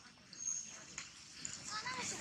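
Young long-tailed macaque giving a quick run of short, high squeaking calls near the end, after a quieter stretch with a faint click.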